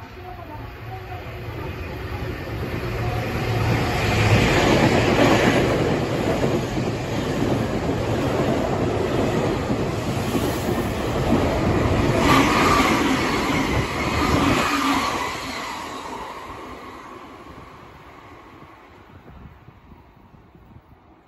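Nankai electric train passing through the station at speed without stopping: the rumble of wheels on rail swells up, is loudest around 4 to 6 seconds and again around 12 to 15 seconds, then fades as the train draws away.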